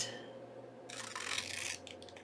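Scissors cutting through glued layers of paper, faint, with a short stretch of cutting about halfway through that lasts under a second.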